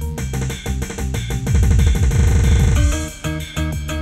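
Live Lampung remix dance music played on an arranger keyboard, with a pounding programmed drum beat and plucked-string sounds; about halfway through, a rapid run of falling low drum hits fills the bar before the beat picks up again.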